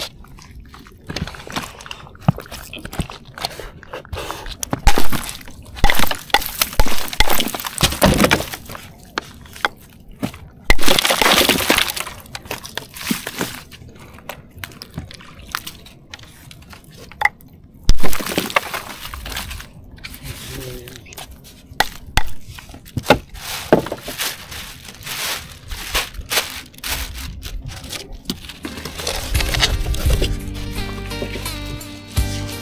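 Ice cubes tipped and shifted over fish in a styrofoam cooler, clinking and crunching in irregular bursts, the loudest a few seconds in and about 18 seconds in.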